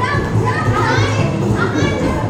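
Young children's voices and chatter over a song playing for their dance.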